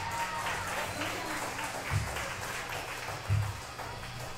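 Light, scattered applause and crowd noise from a small audience between songs, over a steady low hum. Two dull low thumps come about two and about three and a half seconds in.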